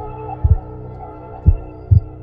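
Heartbeat sound effect: deep double thumps, two beats about half a second apart, one pair at the start and another about a second and a half in, over a low steady droning music bed.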